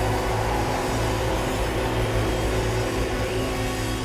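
A live band holds a closing chord over a sustained low bass note while the audience cheers and claps. A sharp final accent lands near the end.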